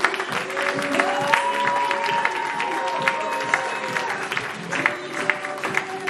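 A live theatre audience applauding, with dense sharp claps throughout, over music with long held notes.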